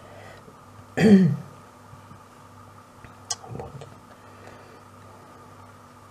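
A woman clears her throat once, briefly, about a second in, followed by a small sharp click a couple of seconds later, over a faint steady hum.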